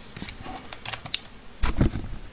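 Plastic bag crinkling and crackling in irregular little clicks as it is handled, with a louder cluster of dull knocks near the end.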